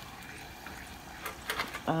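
Corn tortilla frying in a saucepan of hot oil: a steady sizzle, with a few sharper crackles a little over a second in.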